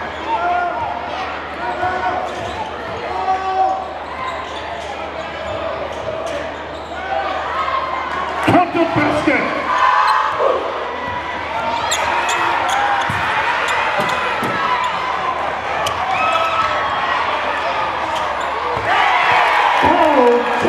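Basketball game in a crowded gym: a ball dribbling on the hardwood court, with crowd chatter and shouts echoing in the hall. The crowd gets louder near the end.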